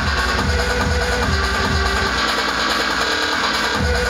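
Loud electronic dance music from a DJ set, played through a club sound system, with a steady kick drum about twice a second. In the second half the bass thins out for a moment, and the full beat comes back just before the end.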